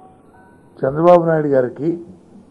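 A man's voice at a press-conference microphone, speaking one drawn-out phrase about a second in, after a short pause. During the pause a few faint high steady tones sound.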